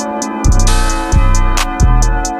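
Instrumental trap beat: three deep 808 bass hits about two-thirds of a second apart, with quick hi-hat ticks and a snare hit just under a second in, over sustained melodic tones.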